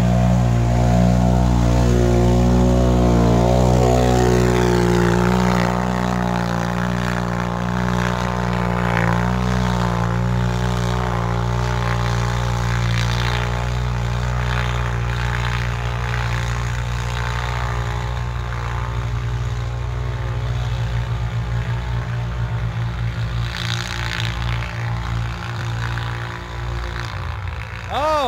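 ATV engines running hard as the quads plow through deep, soft mud. The sound is loudest in the first few seconds, while one churns past close by, and a steady engine drone carries on underneath throughout.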